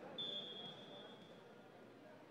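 Faint room tone of an indoor court, with a thin, high, steady tone starting just after the start and fading away over about a second and a half.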